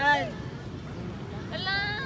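Wordless human vocal sounds: a short exclamation right at the start and a high-pitched, wavering cry in the last half second.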